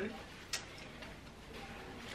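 Plastic clothes hangers clicking as the clothes on them are handled: one sharp click about a quarter of the way in and a fainter tick about halfway, over quiet room tone.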